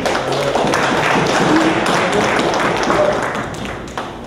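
A small seated audience applauding, many hands clapping at once, fading toward the end.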